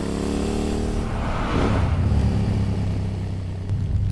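Motorbike engine running, its pitch falling slightly over the first second, then settling into a steady low rumble.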